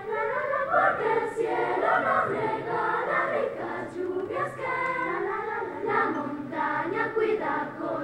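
Children's choir singing.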